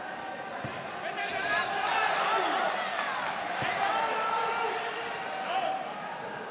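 Arena crowd shouting and cheering at a kickboxing exchange, many voices swelling about a second in and dying down near the end. A few sharp thuds of blows landing cut through it.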